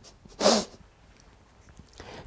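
A woman's short breathy laugh, a single burst about half a second in.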